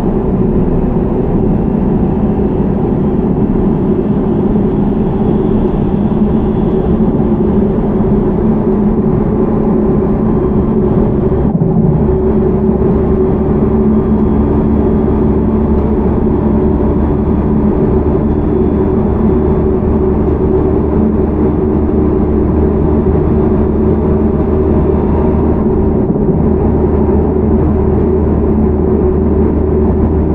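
Interior running sound of a JR Central 313 series electric train car (KuMoHa 313-307, Toshiba IGBT VVVF drive) at speed: steady rumble of wheels on rail with a steady hum underneath. About twelve seconds in, the low rumble gets heavier and stays so.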